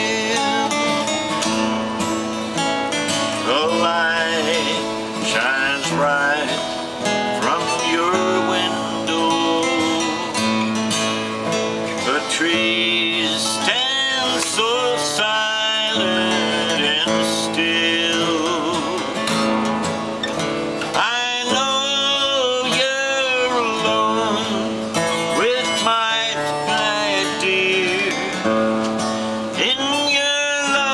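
Steel-string acoustic guitar strumming a country tune, with a wavering melody line over it that comes in strongest at a couple of points.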